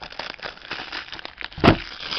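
A DVD box set being handled, with light crinkling and rustling, then one sharp loud thump about one and a half seconds in as the case is set down flat.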